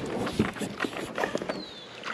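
Irregular knocks, scrapes and rattles as fishing gear and a long-handled landing net are handled in an aluminum jon boat while a hooked bass is brought alongside.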